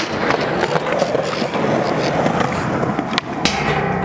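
Skateboard wheels rolling on rough concrete, with several sharp clacks of the board hitting the ground, the loudest a little after three seconds in.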